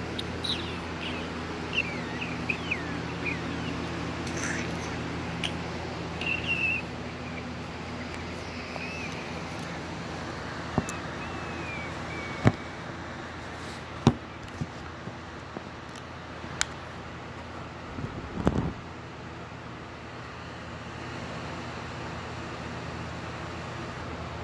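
Handling noise from a phone camera being carried around and set in place, with scattered sharp clicks and knocks from about ten seconds in. Under it, a steady hum that fades after several seconds, and short chirps in the first ten seconds or so.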